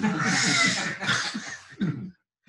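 A man's strained, breathy voice making a non-speech sound, loudest over the first second and then tailing off in short broken pieces.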